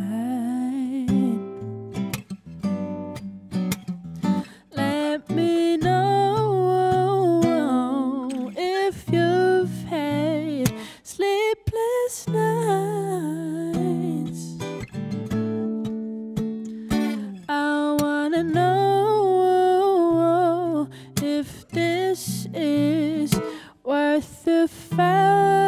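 A solo female voice singing a song, accompanied by her own acoustic guitar, with a couple of short breaks in the voice.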